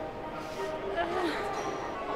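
Indistinct background voices, with no clear words, over a steady room background.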